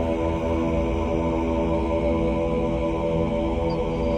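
Music: a sustained, droning chord of held tones over a low rumble, with no beat.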